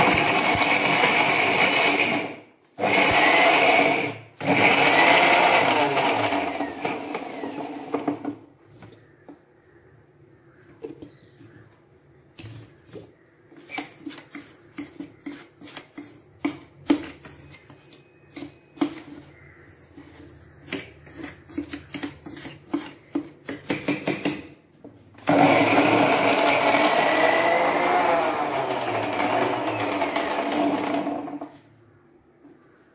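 Electric mixer grinder with a stainless steel jar grinding roasted dried red chillies into a coarse chutney, run in three short bursts at the start and then steadily again near the end. In between the runs there are many sharp clicks and knocks, a spoon scraping and tapping inside the steel jar.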